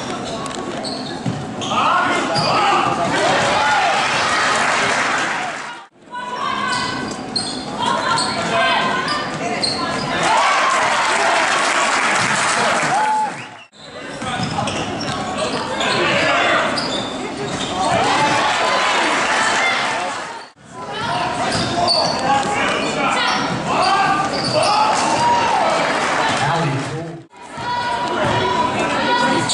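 Live gym sound from a basketball game: a ball bouncing on a hardwood floor, with crowd and player voices echoing through the hall. It comes as several clips of about seven seconds each, split by short drop-outs.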